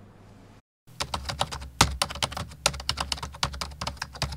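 Typing on a computer keyboard: a fast, irregular run of key clicks starting about a second in.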